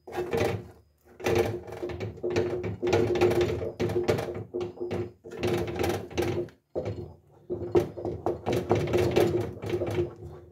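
Wooden spoon stirring thin flour porridge in a stainless steel pot, scraping against the pot in quick rhythmic strokes that make the metal ring. The stirring breaks off briefly about a second in and again near the seven-second mark.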